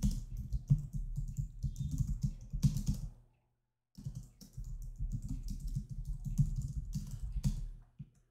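Typing on a computer keyboard: a rapid run of key clicks for about three seconds, a short pause, then a second run of typing.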